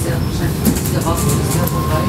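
A steam train's coaches running on the rails, a steady low rumble and rattle with a few clicks, heard from a coach window, and a short steady squeal in the second half.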